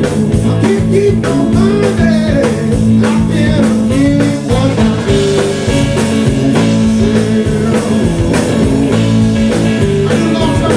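Live blues-rock trio playing: lead guitar with bending notes over bass guitar and a drum kit keeping a steady beat.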